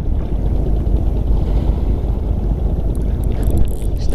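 Steady low rumble of wind buffeting the camera microphone over choppy sea water, with a few faint short clicks near the end.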